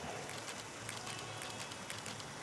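Steady splashing of fountain water, a faint, even hiss.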